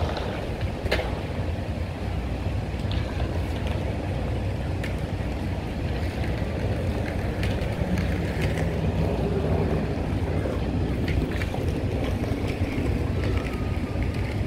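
Steady low outdoor rumble with wind on the microphone. Inline skate wheels roll over paving tiles, with scattered sharp clicks as the skates strike the ground during slalom footwork.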